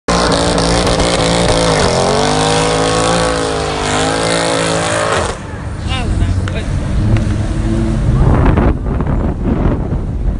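Mercedes-AMG C63's V8 held at high revs during a smoky burnout, its pitch sagging and climbing again. About five seconds in it drops off suddenly, leaving a lower engine rumble and voices as the car pulls away.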